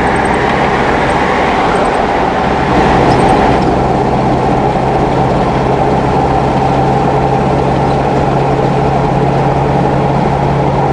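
Steady road and engine noise heard inside a car cruising on a freeway, with a constant low engine drone under the tyre rush. A brief louder rush swells about three seconds in.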